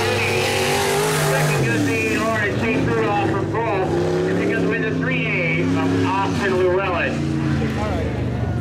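Several IMCA Sport Modified dirt-track race car V8 engines running together, their pitches rising and falling as the cars lap the track, one dropping in pitch about two seconds in.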